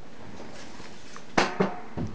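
Wooden futon arm with a metal hinge bolted on, set down against a wall: two sharp knocks about a quarter second apart a little past halfway, the first ringing briefly, then a soft bump at the end.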